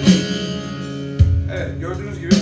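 Long-necked bağlama (saz) sounding a last strummed stroke at the start, its strings ringing out and fading, with a low thump a little over a second in.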